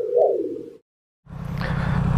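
A short logo sound effect: two quick rising-and-falling tones that cut off suddenly just under a second in. After a brief silence a steady low rumble starts and carries on.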